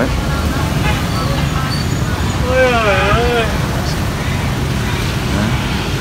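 Steady low rumble of road traffic. About two and a half seconds in there is a brief wavering voice that rises and falls.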